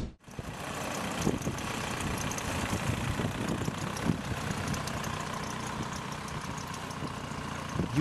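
Volkswagen New Beetle's 1.9-litre diesel engine running steadily at low speed while the car tows a heavy flatbed gooseneck trailer.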